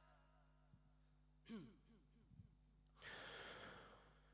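Near silence in a pause between recited Quran verses. A brief faint sound comes about a second and a half in. Near the end there is a faint breath drawn in close to the microphone as the reciter prepares for the next phrase.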